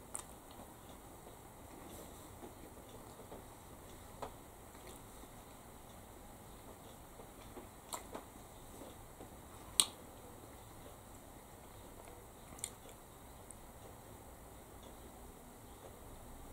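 Quiet chewing of a soft brioche roll, with a few faint sharp mouth and lip clicks scattered through it. The loudest click comes about ten seconds in.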